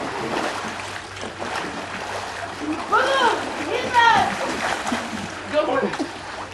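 Water splashing in a swimming pool as people swim, with voices calling out in rising-and-falling shouts about three and four seconds in.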